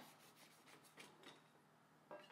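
Near silence, with a few faint scrapes and light taps from a kitchen knife cutting through a brownie cake on a wire cooling rack, most of them in the first second.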